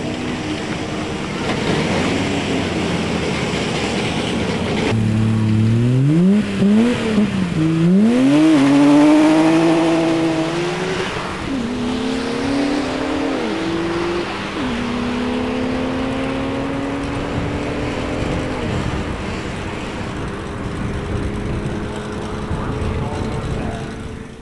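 Nissan Skyline R32 GT-R's twin-turbo straight-six accelerating hard down a drag strip. Its pitch climbs and drops back at each gear change, four or five times, then holds a slowly rising note before fading to a drone. Before the launch, for about five seconds, there is a steadier, more distant engine drone.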